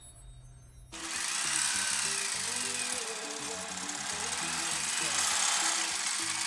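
Electric sewing machine running steadily, starting suddenly about a second in, with soft music underneath.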